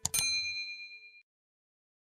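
Subscribe-button animation sound effect: a quick click and a bright bell ding that rings out and fades within about a second.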